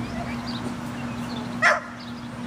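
A dog barks once, a short sharp bark about three-quarters of the way through, over a steady low hum.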